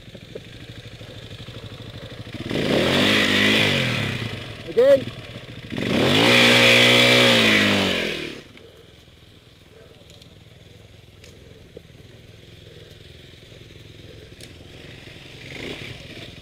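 Four-stroke dirt bike engine revved twice, each rev about two seconds long, its pitch rising and then falling back, with a short blip of throttle between the two. After the second rev the engine sound drops to a low, quiet running.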